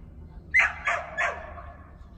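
A dog barking three times in quick succession, about a third of a second apart.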